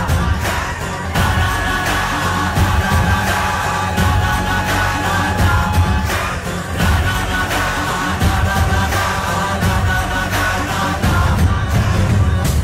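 A song with singing over a steady drum beat and sustained instrumental tones.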